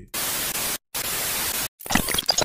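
TV static hiss, a 'no signal' glitch transition effect: two bursts of under a second each, split by a sudden silent cut, then choppy stuttering crackles near the end.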